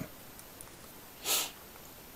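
A short intake of breath through the nose, a sniff, about a second into a near-silent pause.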